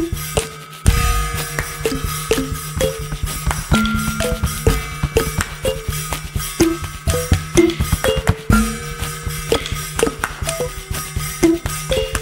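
Acoustic percussion beat built from overdubbed hits played without electronic effects or loops: a dense run of knocks and clicks with short pitched notes over a steady low drone. The drone and hits drop out briefly just under a second in, then come back with a heavy hit.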